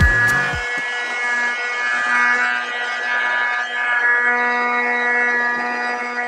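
Handheld electric heat gun running: a steady motor whine over a hiss of blown air. It is softening sticker vinyl.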